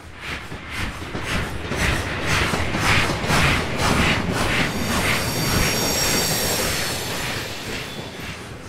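Train running on rails, growing louder over the first couple of seconds, with a rhythmic clatter of wheels over rail joints about twice a second. About five seconds in, a high-pitched steady wheel squeal joins it.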